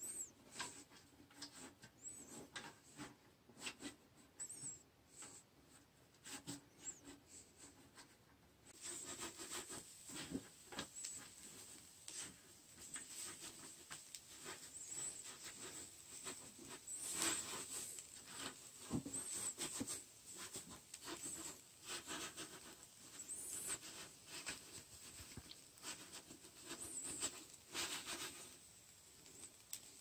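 A gloved hand rubbing and rolling wilted winged spindle (Euonymus alatus) shoots against a nonstick electric skillet, giving faint, irregular rustling and crackling that grows busier about a third of the way in. The rubbing bruises the leaves during pan-firing for tea, so their moisture escapes and they steep faster.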